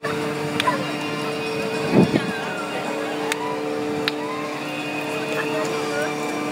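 Recorded outdoor ambience, cutting in suddenly, with a steady two-tone hum, background voices and scattered sharp clicks, and a low thump about two seconds in.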